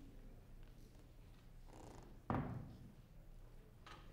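A single heavy thud from a grand piano being moved and opened by hand, about two seconds in, followed by a short low ring-out through the instrument's body.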